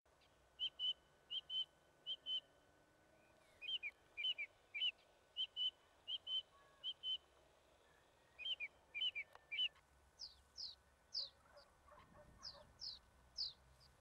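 Small birds calling in repeated short, high chirps, often in pairs, one or two a second. From about ten seconds in the notes change to sharper, higher calls that fall quickly in pitch.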